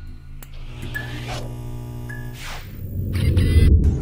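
Intro music: a deep, sustained bass drone builds up, with whoosh sound effects about a second and a half and two and a half seconds in. A crackling electric buzz swells near the end.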